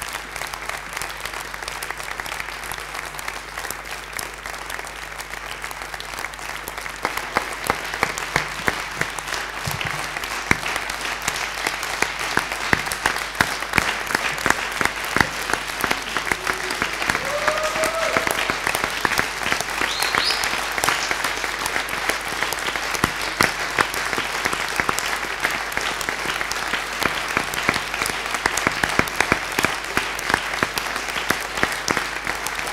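Sustained applause from a large hall audience, many hands clapping at once, swelling about seven seconds in. A few short rising cheers stand out near the middle.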